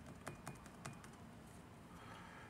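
Near silence with about four faint, short clicks in the first second.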